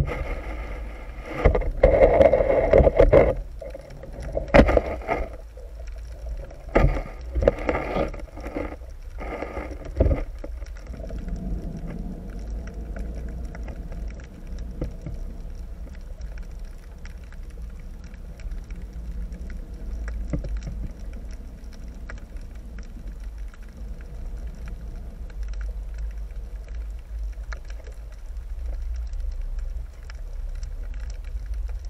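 Underwater sound picked up through a GoPro's waterproof housing in a strong tidal current. For the first ten seconds or so there is a run of loud knocks and scrapes as the housing is pushed and dragged over the rocky, weedy bottom. After that comes a steady low rumble of rushing water with a faint hum.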